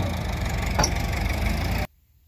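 Onion-loading machinery running: a steady low engine drone with conveyor belt rumble as onions are carried up into a wagon, and a single knock a little under a second in. It cuts off suddenly near the end.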